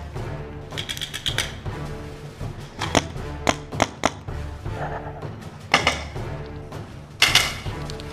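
Paintball markers firing sharp pops: a quick burst of about five shots around a second in, then single shots scattered through, with a louder burst near the end. Background music with a steady bass line plays underneath.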